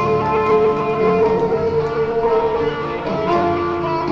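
Live rock band playing an instrumental passage with guitar, over which a long lead note is held and then drops to a lower held note a little after three seconds in.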